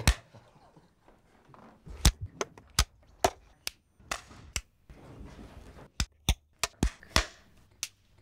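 A rapid run of film clapperboard sticks snapping shut: about a dozen sharp single claps at uneven intervals, one right at the start and the rest coming thick from about two seconds in, with faint background noise between them.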